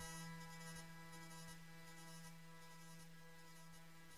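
Near silence: a faint steady hum, with the last of the background music dying away over the first second or so.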